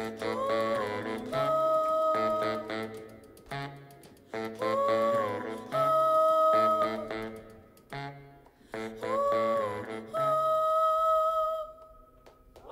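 A woman hums a wordless melodic phrase three times over plucked electric guitar chords, each phrase a note bending upward followed by a long held note. The last held note stops just before the end as the song finishes.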